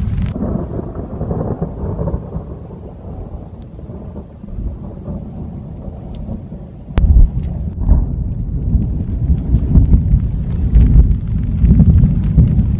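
Thunder rumbling through a lightning storm. A sharp crack about seven seconds in is followed by a long, loud, rolling rumble.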